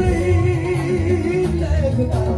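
Male lead singer holding one long note with vibrato over a live band's bass and drums, then moving into a short gliding phrase near the end.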